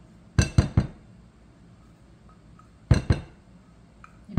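Stainless steel measuring cup clinking against a glass mixing bowl as peanut butter is scraped and knocked out of it: a quick run of about three ringing knocks shortly after the start, and two or three more near the end.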